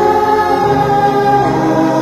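Sped-up pop song with singing, one vocal note held for most of the time.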